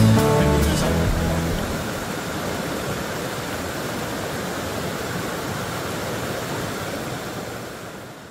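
A song ends in the first second or two, leaving a steady rush of water from a waterfall and rocky stream, which fades out near the end.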